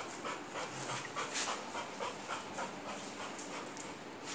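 A dog panting quickly and rhythmically, about four breaths a second.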